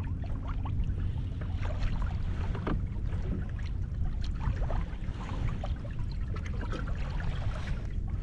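Wind buffeting the microphone over small waves lapping and splashing against a kayak hull, with scattered light ticks and splashes.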